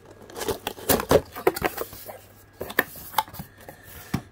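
Cardboard box and crumpled packing paper being handled: rustling and scraping with a run of sharp taps and knocks, the loudest about a second in.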